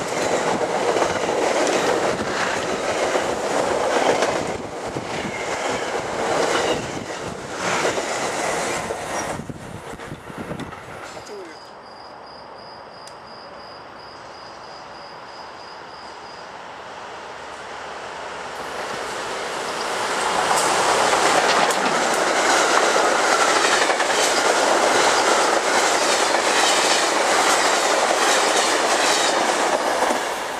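Electric commuter train passing close at speed, its wheels clattering over the rail joints, fading away over the first ten seconds or so. After a quieter lull, another train approaches and passes loudly, with a rushing rail roar and some wheel squeal, through the last ten seconds.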